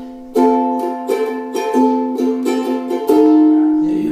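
Ukulele strummed in an instrumental break without singing, about three strums a second, with a chord change about three seconds in.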